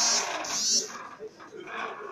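Handling noise on a phone's microphone as it is moved: two loud rubbing swishes in the first second, then faint voices in the room.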